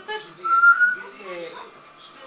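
Young puppies whining and squeaking, with one high, steady whine from about half a second in that is the loudest sound.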